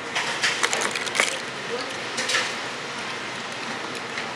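Restaurant dining-room background noise with a few short sharp clicks and rustles in the first second or so and again a little past two seconds in.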